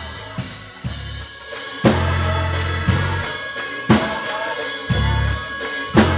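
A live band playing a slow groove: a drum kit strikes about once a second while an electric bass holds low notes between the hits, with keyboard tones sustained underneath.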